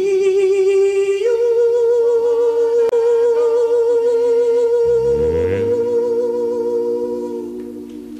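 A singer holds a long final note with vibrato, stepping up to a higher pitch about a second in, as the song's closing phrase. A low orchestral chord comes in underneath just past the middle, and the note fades out near the end.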